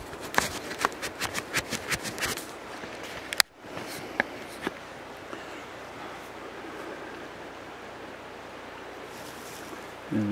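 Handling noise from a finger rubbing and tapping on the camera while the dirty lens is wiped: a quick run of scratchy clicks, then a sharp knock about three and a half seconds in with a brief cut-out. After that, a steady low hiss.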